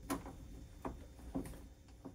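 Faint, light ticks from a torque screwdriver being turned to tighten a terminal screw on an inverter's wiring block, three or four small clicks spaced about half a second to a second apart.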